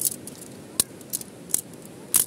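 Sectioned tent poles clicking and clacking as they are pulled apart and handled: about four sharp, light clicks.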